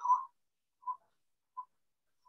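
The end of a spoken word heard over an online call, then two brief, faint blips at one pitch.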